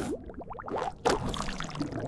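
Splashing, gushing water sound effect, with short rising bubbly notes about half a second in and a noisier rush of liquid in the second half.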